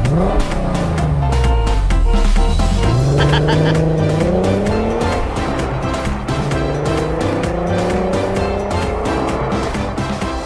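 Car engine revving sound effects, rising in pitch several times, laid over upbeat background music with a steady beat.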